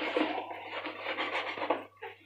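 Scouring sponge scrubbing a foam-covered gas stove burner cap: a continuous wet rubbing scrape that stops just before the end.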